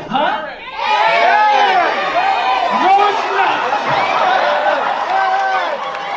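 Comedy club audience: many voices talking and calling out over one another, swelling about a second in.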